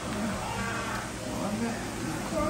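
A person's voice with wavering pitch, in short unclear sounds without recognised words.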